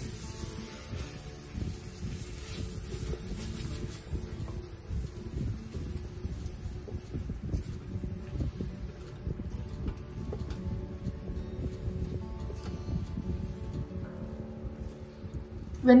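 Wooden spatula stirring and scraping thick masala paste around a stainless-steel Instant Pot inner pot as it sautés, in irregular strokes. Soft background music plays underneath.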